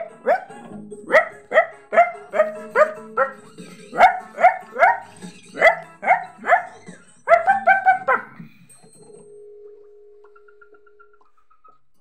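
Children's cartoon soundtrack played through a TV: music with a quick run of short, rising, bark-like vocal calls, two or three a second, that stops about eight seconds in. A faint held tone follows.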